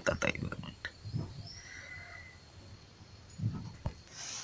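A person's voice in a few short, low murmurs or grunts: one at the start, one about a second in and one near the end.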